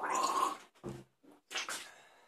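A man's breathy, pained exhales with a short low grunt between them, from a mouth burning after eating Komodo Dragon chillies.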